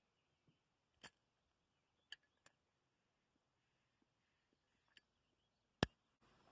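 Near silence broken by a few faint sharp clicks, with one louder click just before the end.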